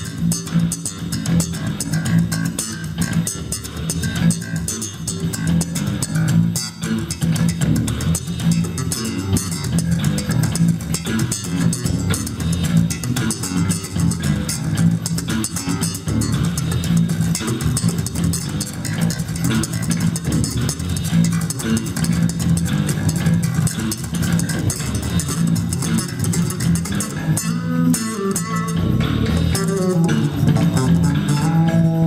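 Two electric bass guitars played together through amplifiers in a freestyle jam. Busy plucked bass lines run continuously, with the weight in the low notes.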